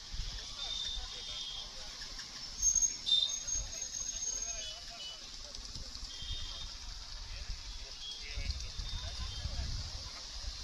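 Faint, indistinct voices over a steady low rumble, with a few brief high-pitched tones and a louder moment about three seconds in.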